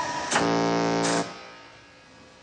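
Electric buzz of a shock-generator console: a click as the 15-volt lever is switched, then a steady, even buzz for about a second that stops and dies away. It marks a 15-volt punishment shock being given.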